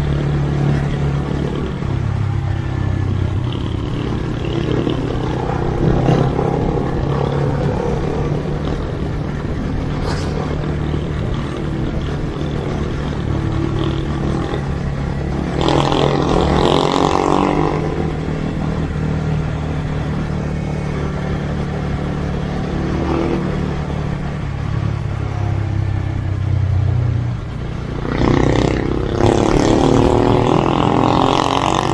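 Sport motorcycle engine running steadily at low speed, heard from the rider's seat, with a couple of louder swells about halfway through and near the end.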